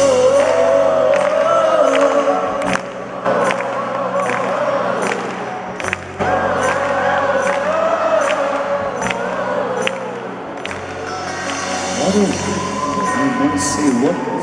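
Live band music with a male singer holding long wavering sung phrases over a steady percussion beat, recorded from within the audience. Near the end the crowd's noise rises as the phrase closes.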